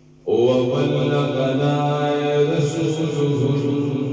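A man's devotional chanting, amplified through a handheld microphone. It begins abruptly about a quarter second in and carries on in long drawn-out notes.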